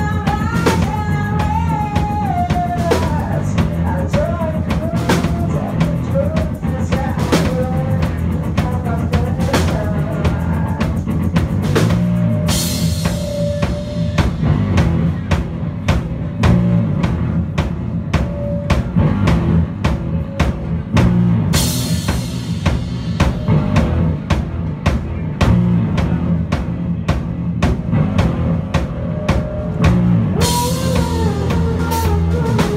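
Rock band playing live: a woman's singing trails off in the first few seconds, leaving an instrumental stretch of electric bass and a steadily played drum kit. Bright cymbal crashes ring out twice, near the middle and about three-quarters through.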